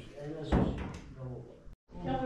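Voices talking, with one short, loud thump about half a second in; the sound cuts out completely for a moment near the end.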